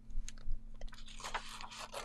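Sublimation transfer paper being peeled off a freshly heat-pressed puzzle: a dull bump at the start, then a run of small crackles and crinkles of stiff paper.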